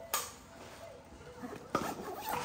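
Light handling noise from a fabric backpack being held open and moved: a short click just after the start, then faint rustling, with a few quick knocks about three quarters of the way through.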